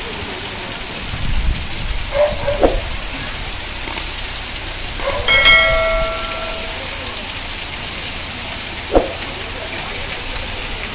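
Heavy rain pouring down steadily on a street and shop roofs. About five seconds in, a bell-like chime rings for a second or so, and a single sharp knock sounds near the end.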